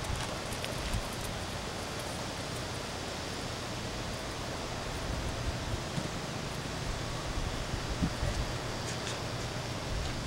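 Steady outdoor background of wind and rustling leaves, with a few faint ticks.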